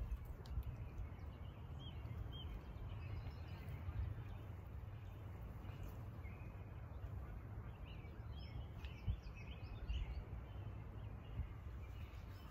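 Steady low wind rumble on the microphone, with a few faint bird chirps.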